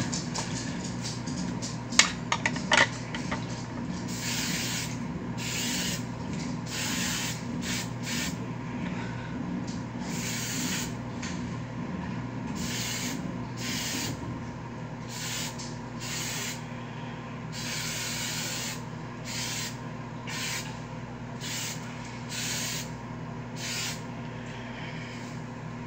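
Aerosol hairspray can being sprayed onto hair in a string of short hisses, over a dozen, about a second apart. A few sharp clicks come about two seconds in.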